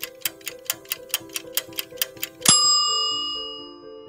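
Fast, even ticking, about five ticks a second, over held music notes, then a single bright bell-like ding about two and a half seconds in that rings out and fades.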